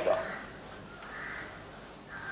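A single drawn-out call, most likely a bird's, about a second in, over quiet room tone.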